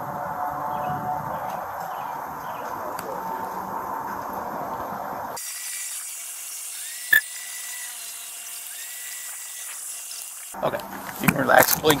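Steady outdoor background noise on a police body camera's microphone, a dull hiss and rumble. About halfway through the sound changes abruptly to a thin, high hiss with one sharp click, and voices come back near the end.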